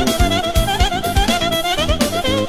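Electronic arranger keyboard played live: a fast, ornamented lead melody in a violin-like voice over a steady drum beat and bass, in Balkan Roma dance style.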